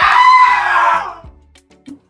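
A short, loud, high-pitched sound effect edited in: a held high tone with a noisy edge, lasting about a second before it fades out.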